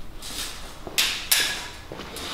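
Two sharp knocks on the timber stud framing, about a third of a second apart and about a second in, each dying away quickly in the room.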